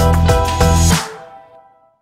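Upbeat logo-sting music with a steady beat that ends sharply about a second in, its last notes fading out.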